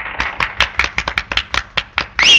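Hands smacking together in a quick, irregular run of sharp smacks, about six a second.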